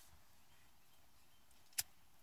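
A single sharp click near the end, a lighter being struck to light a tobacco pipe, over faint room tone.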